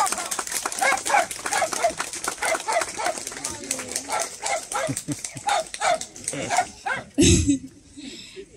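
Audience applauding, with voices heard among the clapping. The clapping dies away near the end, where there is one loud thump.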